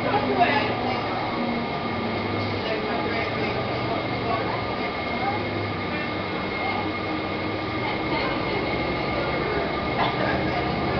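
Steady engine and road noise inside a moving city bus, with a faint steady high whine over the rumble.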